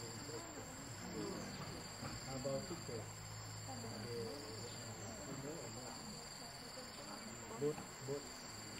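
Steady high-pitched insect chorus, two continuous trilling tones held throughout, with faint human voices underneath and a brief thump near the end.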